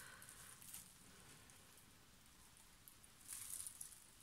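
Near silence: room tone, with a faint brief rustle about three and a half seconds in.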